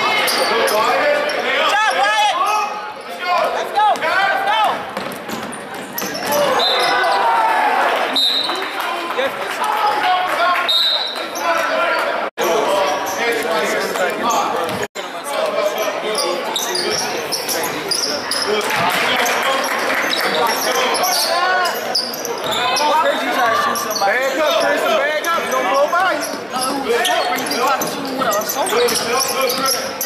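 Live high school basketball game in a gymnasium: the ball dribbling on the hardwood floor, a few short sneaker squeaks, and players and spectators shouting and talking indistinctly, echoing in the large hall. The sound drops out for an instant twice near the middle.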